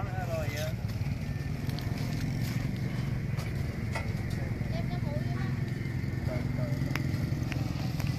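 Indistinct voices of people talking at a distance over a steady low hum.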